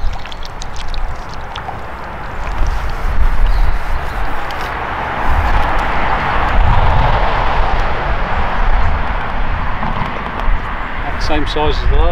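Wind on the microphone outdoors: a steady low rumble, with a rushing noise that swells through the middle and fades again.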